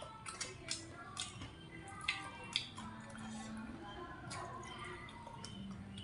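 Eating sounds: chopsticks working rice noodles in a foam takeaway box, with a run of small clicks and wet mouth sounds in the first half, over quiet background music.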